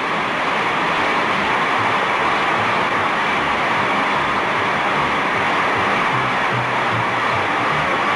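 Large auditorium audience applauding steadily, with faint music underneath.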